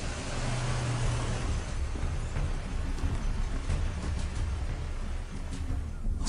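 Army truck engine running with a steady low rumble under a broad hiss.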